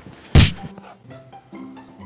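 A single heavy thud about a third of a second in, over soft background music.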